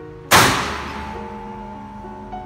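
A single loud mechanical bang from a high-voltage circuit breaker's operating mechanism about a third of a second in, ringing off over roughly a second. It is the sound that marks the spring energy storage as finished. Background music plays throughout.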